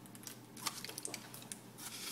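Aluminium foil around a baked potato crinkling faintly as it is handled, a scatter of small crackles.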